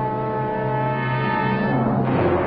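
Orchestral film-score music: a held low brass chord that changes near the end.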